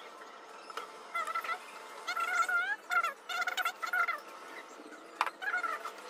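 Poultry calling in a series of short wavering calls, with a rapid trill in the middle. A single sharp click comes near the end.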